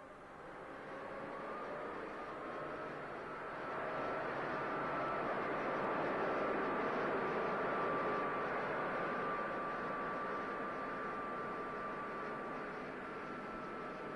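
Motorized sprayer blowing a fine mist over trees: a steady hissing rush with a faint high whine, swelling over the first few seconds and then holding.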